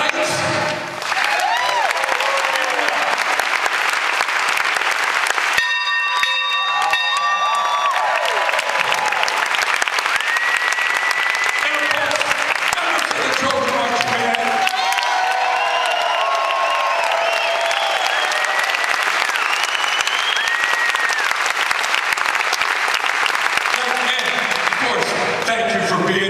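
Audience applauding and cheering, with scattered whoops.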